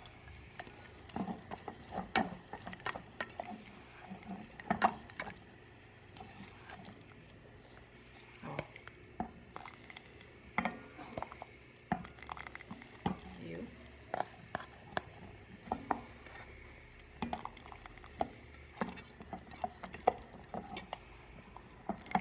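Wooden spoon stirring caramel syrup in a saucepan, with irregular knocks and scrapes of spoon against pot, a few of them louder.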